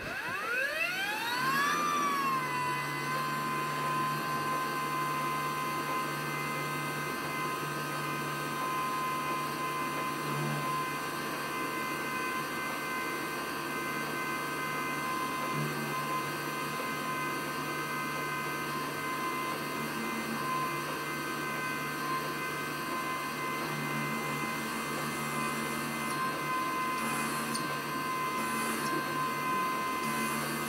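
Small milling machine's spindle motor spinning up, its whine rising in pitch over the first two seconds or so, then running steadily at speed while a spot drill is fed into an aluminium model-engine crankcase.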